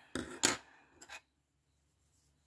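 Small metal scissors clicking as they are handled after cutting the cotton yarn: a couple of sharp clicks, the loudest about half a second in, then two faint ones just after a second.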